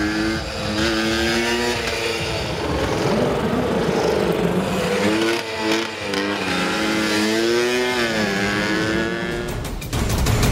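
Go-kart engine running on a track, its pitch rising and falling several times as it speeds up and eases off.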